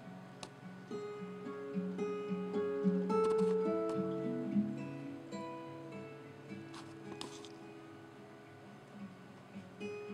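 Acoustic guitar played as a slow run of picked notes that ring on, building over the first few seconds and thinning out and fading toward the end.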